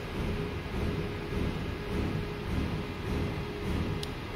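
Electric motor of a Toyota electric power-steering column running on a bench, turning the steering shaft as openpilot commands it to steer after the column has been initialized. A low whir that swells and fades in gentle waves, over a steady hum.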